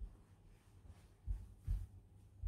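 A child's running footsteps on a floor: soft low thumps, two of them close together about a second and a half in.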